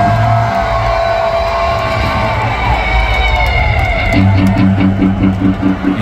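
Live electric guitar through a stadium PA, holding long notes that bend down in pitch, then from about four seconds in a low note pulsing about four times a second.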